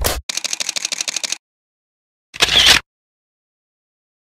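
Camera shutter sound effect: a fast run of clicks, about a dozen a second for about a second. A louder single burst follows about a second later.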